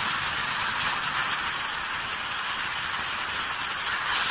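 Steady television-static hiss with no other sound in it.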